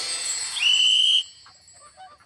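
Cartoon magic sound effect: a shimmering hiss, then a whistle-like tone that slides up and holds for about half a second before cutting off suddenly.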